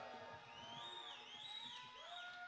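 Faint concert-hall sound between songs: thin held tones, a high one sliding up and down several times and a lower one held steady, over low crowd noise.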